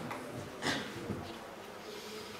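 Sheets of paper being handled on a table, with a brief rustle about two-thirds of a second in, over a faint low buzzing hum.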